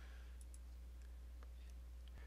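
Quiet room tone with a steady low electrical hum and a few faint, isolated clicks.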